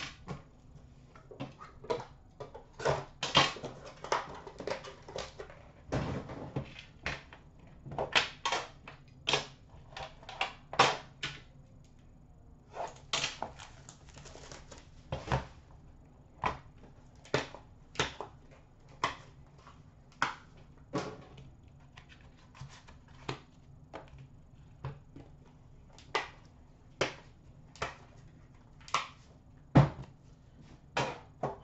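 Upper Deck The Cup hockey card tins being handled and opened: irregular clicks, taps and knocks of the metal tins and their packaging, with short scraping and rustling stretches as the contents are slid out.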